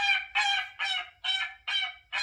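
Geese honking, a sound effect played through a Google Home Mini's small speaker: a rapid series of short honks, about three a second.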